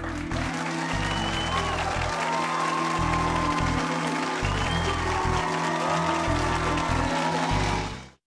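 Studio audience applauding over music with a pulsing bass beat; both stop abruptly at the very end.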